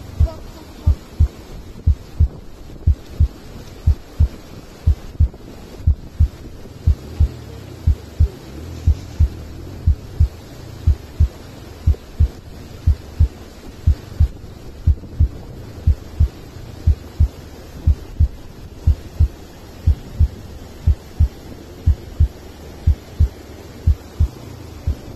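Steady heartbeat-like double thumps, a pair about every 0.8 s (roughly 75 a minute), over a continuous rushing of river water.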